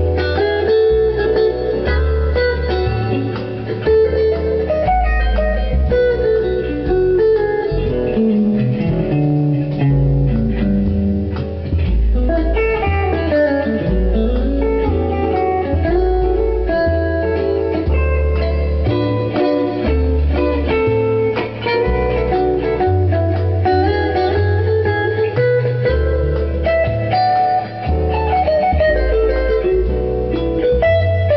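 Electric guitar playing a jazzy blues jam of single-note lines with pitch slides, over a low bass line that moves note to note about once a second.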